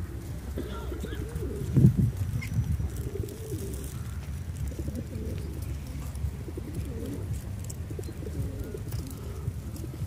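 Feral pigeons cooing repeatedly in low, wavering calls, with a brief low thump about two seconds in.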